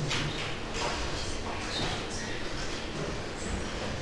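Classroom background noise: faint irregular rustling and shuffling, with low indistinct voices.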